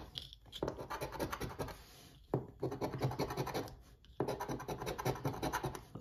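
Round metal coin-style scratcher scraping the coating off a paper scratch-off lottery ticket in rapid back-and-forth strokes. It comes in three runs, with short pauses about two seconds in and about four seconds in.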